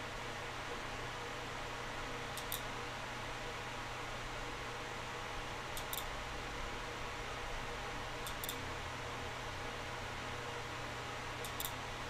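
Computer mouse clicks, four of them a few seconds apart, each a quick double click, over a steady low hum and hiss of room and computer noise.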